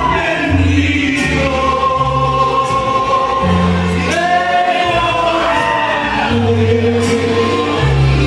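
A male vocalist singing a ranchera-style song into a microphone over amplified backing music, holding long notes above a steady bass line.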